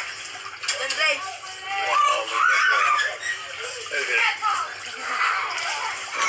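Several voices talking over one another with background music, and water sloshing as people move around in an inflatable kiddie pool.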